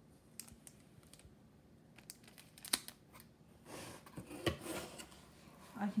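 Paper sheets and a cardboard box being handled: scattered light clicks and taps, then a stretch of rustling with one sharper knock in the second half.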